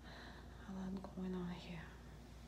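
A woman's soft, wordless murmur: two short hummed sounds of level pitch, like "mm-hmm", starting a little over half a second in.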